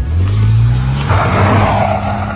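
Car engine revving hard as the car accelerates away, its pitch climbing over the first second and then holding high, with a rush of noise joining about a second in.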